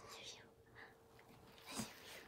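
Quiet whispering, breathy and soft, with a louder breathy burst near the end, over a faint steady hum.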